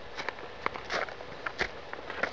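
Footsteps on a forest trail covered with dry fallen leaves and loose stones: a run of irregular, short crunches and scuffs.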